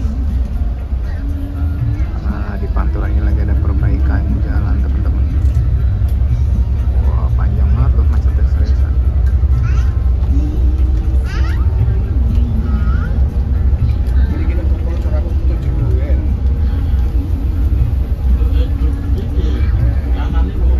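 Steady low rumble of an intercity coach's engine and tyres on a wet road, heard inside the cabin. Voices and music from the onboard TV play over it.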